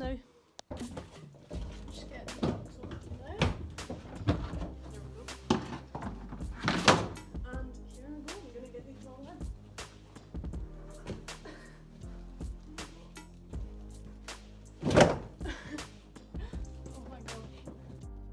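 Background music with a beat. Over it come a run of dull thunks, the two loudest about seven and fifteen seconds in.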